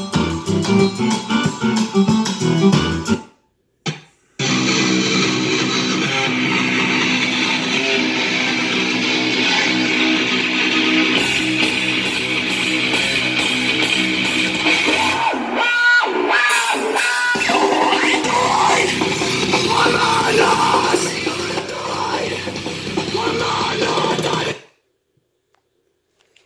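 Loud guitar-driven rock music played through a Samsung Family Hub fridge's built-in AKG speaker. It cuts out for about a second around three seconds in, starts again, and stops shortly before the end.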